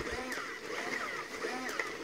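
Silver Robosapien V2 toy robot's motors whirring faintly as it moves, the whine rising and falling in pitch.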